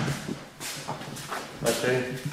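Men speaking briefly, with several short taps in between.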